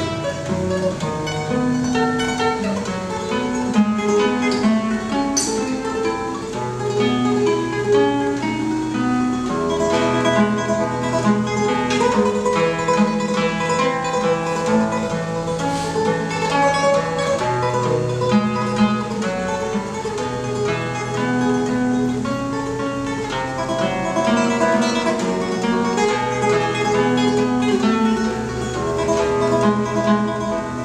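Classical nylon-string guitar played solo, a picked melody over held bass notes.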